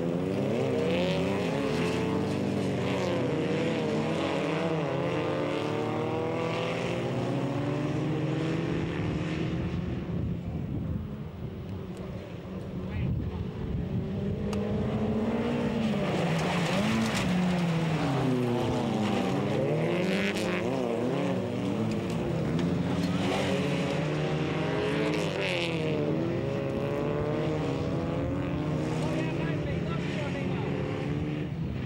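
Several folkrace cars racing on a dirt track, their engines revving up and down in overlapping notes as they accelerate and lift for the corners; the engine noise drops back for a few seconds near the middle.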